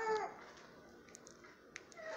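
A brief high whimper-like cry that falls in pitch at the very start, followed by near silence.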